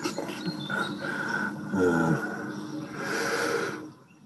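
Opening soundtrack of a BBC Scotland documentary, played from a computer over a video call: a dense, noisy mixture with a short falling pitched sound about two seconds in, fading out just before the end.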